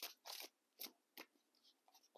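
Faint hand-shuffling of a tarot deck: four short, soft rustles and snaps of the cards sliding against each other in the first second and a half.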